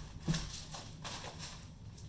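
Handling noise from a hand being worked into a new, still-stiff Warrior Ritual G5 goalie catch glove: a knock about a third of a second in, then a few soft rustles, fading after about a second.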